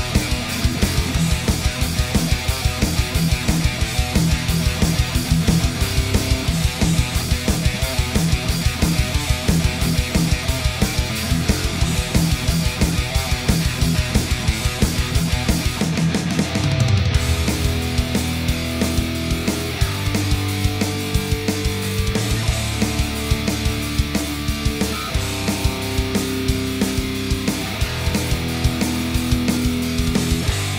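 Heavy metal song in a full mix: distorted electric guitar through the Positive Grid BIAS Amp 2 Triple Treadplate amp simulation with Celestion Greenback speakers, playing fast chugging riffs over a driving rhythm. About halfway through a low note slides down, and the riff moves on to longer held chords.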